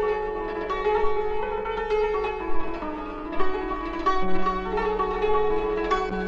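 A Persian plucked string instrument plays solo in dastgah Shur, picking a melody note by note.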